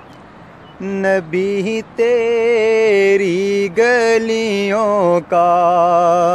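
A solo male voice sings a naat in long, ornamented held notes with a wavering vibrato, without instruments. The singing starts about a second in, breaks briefly between phrases, and ends on a long wavering note.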